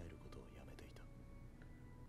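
Near silence: faint dialogue playing low in the background over a steady low hum.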